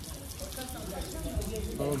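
Small stone courtyard fountain, its thin jets splashing steadily into the basin, a constant hiss of falling water, with faint voices nearby and a man's 'oh' near the end.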